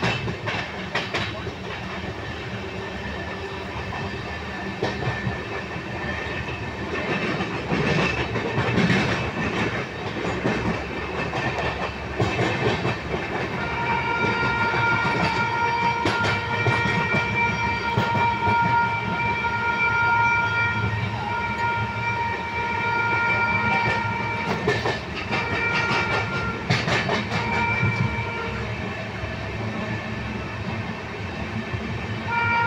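Passenger train running through a station, heard from inside a coach: a steady rumble with wheels clicking over rail joints and points. From about 14 to 28 seconds in, a long, high steady tone of several pitches together sounds over it with a few short breaks.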